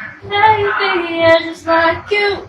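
A high-pitched voice singing without accompaniment: one long note held for about a second and sliding slightly down, then a short note near the end.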